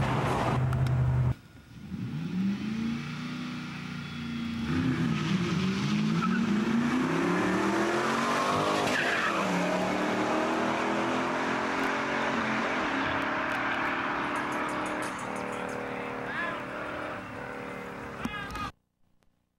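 Street-race cars accelerating hard from a launch: the engines rev up again and again through several gear changes as they pull away, over heavy road and tyre noise. A steady in-car drone is heard first and cuts off abruptly about a second in.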